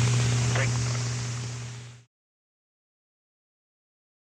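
Steady low hum and hiss of an old B-52 cockpit intercom recording, with a brief faint voice under a second in. It fades down and cuts to silence about two seconds in.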